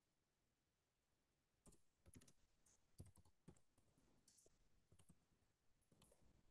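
Faint typing on a computer keyboard: a run of irregular key clicks that starts a little under two seconds in and stops a few seconds later.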